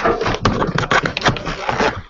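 Jumbled clattering and rustling noise picked up by a participant's open microphone on a video call: dense, irregular knocks with no clear voice. A participant later puts this kind of noise down to someone walking around with the mic live.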